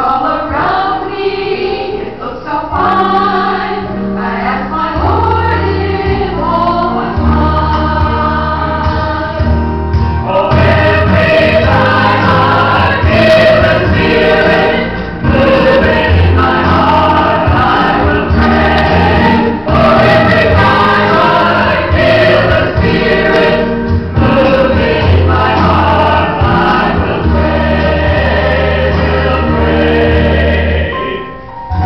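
A choir singing a gospel-style sacred song over a deep bass line, the music growing fuller and louder about ten seconds in.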